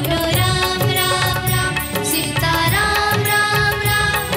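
A song performed live: a voice singing a melody over instrumental backing with a steady rhythmic beat.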